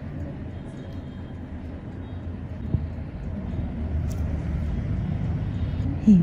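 Steady low background rumble with faint, indistinct voices, and one sharp click a little before halfway.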